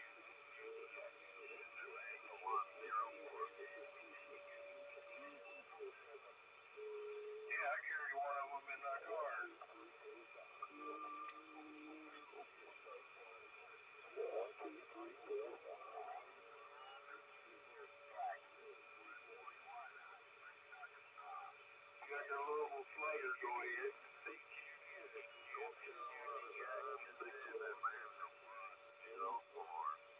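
Single-sideband voice traffic on the 11-metre CB band through a CRT SS-9900 transceiver's speaker, tuned to 27.385 MHz lower sideband. Several crowded stations are heard as intermittent, garbled bursts of speech over band hiss, with steady whistling tones from overlapping carriers.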